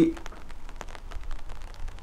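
Light rain: scattered raindrop ticks falling close to the microphone, over a steady low rumble.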